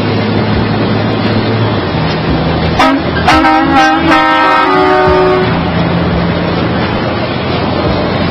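Steady engine and road noise inside a semi-truck cab at highway speed. A horn with several tones sounds for about two seconds in the middle.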